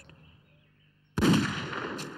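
A single rifle shot about a second in, sudden and loud, followed by a long echoing tail.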